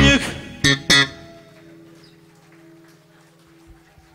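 A live rock band finishes a song: the last electric guitar and bass chord, with a few sharp drum hits in the first second, then the sound dies away to a faint steady low tone from the stage amplification.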